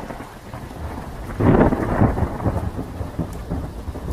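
Thunder sound effect over steady rain. It swells loud about one and a half seconds in and then slowly rolls away.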